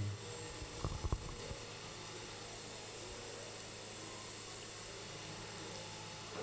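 Steady hiss with a low electrical hum from a sound system's microphone channel left open during a pause in speech, with a few faint clicks about a second in.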